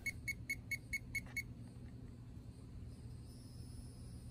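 Ancel PB100 circuit probe's buzzer beeping in a quick, even run of short high beeps, about four or five a second, as its tip touches a connector pin in a continuity test. The beeping stops about a second and a half in, leaving a faint low hum.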